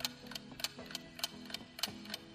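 Countdown-timer tick-tock sound effect, about three ticks a second with every other tick louder, over soft background music.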